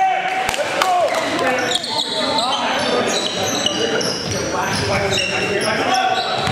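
Live court sound of a basketball game: sneakers squeaking on the gym floor in many short, high squeaks, a basketball bouncing, and players' voices calling out.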